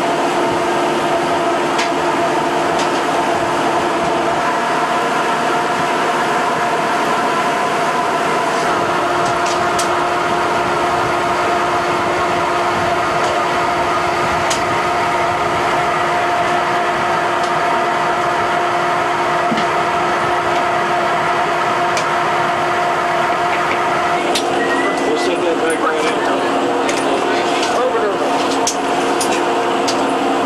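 Steady machinery and ventilation hum inside a submarine's control room, made of several constant tones, with faint voices underneath. About 24 seconds in a new lower tone joins, and a few light clicks follow.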